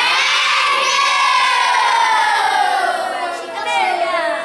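A crowd of schoolchildren shouting together. One long drawn-out shout starts suddenly and slowly falls in pitch, and a second shorter shout rises up near the end.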